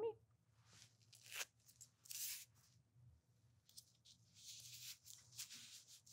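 Faint rustling and tearing of paper medical tape, in a few short bursts, as strips are peeled free and handled with gloved hands.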